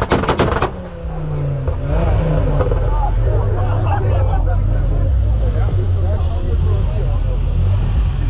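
A rapid string of loud exhaust bangs and pops from a tuned car's anti-lag, cutting off under a second in. The revs then fall and the engine settles to a low steady idle under crowd chatter.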